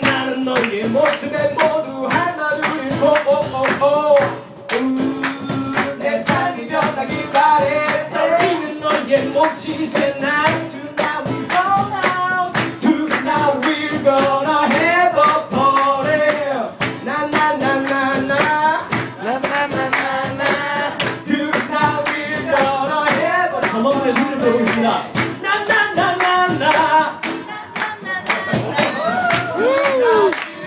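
Live male vocals sung into a microphone over a strummed acoustic guitar, with a steady percussive beat running through the song.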